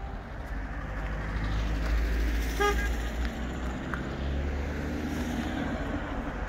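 Low rumble of road traffic, with one short horn toot about two and a half seconds in.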